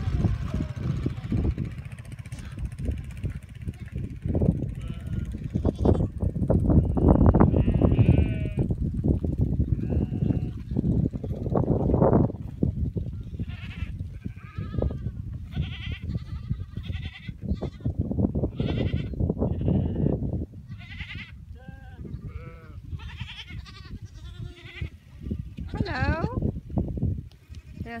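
A flock of Mongolian cashmere goats and sheep bleating: many short calls, one after another, through the second half. Before the bleating starts, a heavy, gusty low rumble dominates.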